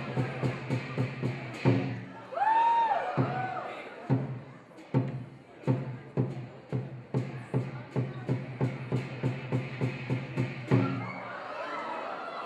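Lion dance percussion: a large drum beaten in a steady rhythm of about three to four strokes a second, with sharp metallic crashes on the beats. The rhythm breaks off briefly while a voice calls out in a long rising and falling cry, then starts again and stops about a second before the end, leaving crowd murmur.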